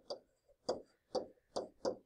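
About five short, light taps of a stylus on a tablet's writing surface as digits are handwritten.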